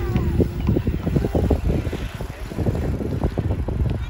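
Riding an electric bike under pedal assist: wind buffeting the microphone and a steady low rumble from the ride, with the hub motor's faint hum underneath.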